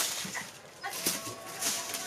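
Thin plastic kite sheets and foil tinsel crinkling and rustling in irregular bursts as they are handled, with a faint thin whine coming in about halfway through.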